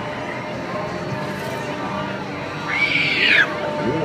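A single high-pitched scream about three seconds in, rising and then falling over roughly half a second, above the steady background din of a fairground ride.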